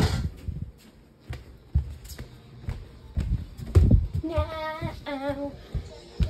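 Low thumps and rubbing from a hand-held phone carried at a walk, then a girl's voice sings two short held notes a little over four seconds in.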